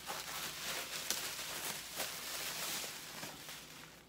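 Plastic wrapping and card packaging rustling and crinkling as it is handled, a hiss of fine crackles with small clicks that fades toward the end.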